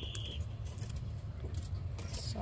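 Plastic and foil breakfast packets being handled, with light crinkling and clicking, over the steady low rumble of a running train. A brief high beep ends just as it begins.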